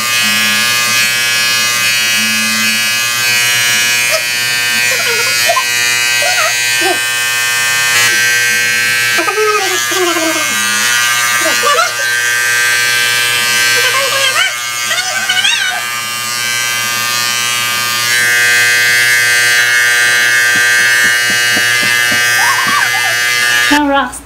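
Corded electric hair clippers running with a steady buzz while cutting a man's hair. The buzz cuts off suddenly near the end.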